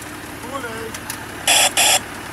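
Refuse truck's left-turn warning alarm giving two short, loud hissing bursts of noise about one and a half seconds in, the lead-in to its repeated 'caution, truck turning left' voice message, over the low hum of the truck's engine.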